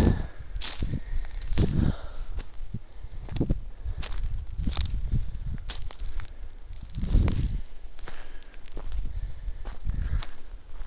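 Footsteps crunching on dry pine needles, twigs and cone litter, in an irregular walking rhythm of about one step a second.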